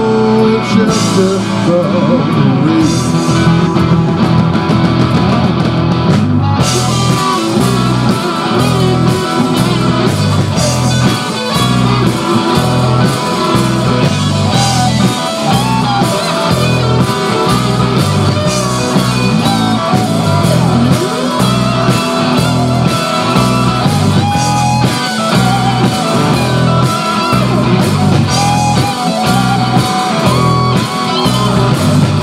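Live rock band playing: electric guitars and a drum kit keeping a steady beat. Cymbals come in strongly about six and a half seconds in.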